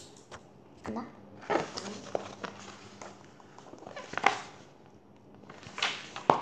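A paperback picture book being handled and its pages turned: a few scattered soft paper rustles and taps.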